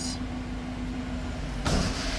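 2013 Chevy Silverado 1500's V8 idling, heard from inside the cab as a steady low hum. A short rush of noise comes near the end.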